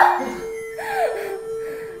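School bell chime playing a few held ding-dong tones, with a brief voice sliding up and down about a second in.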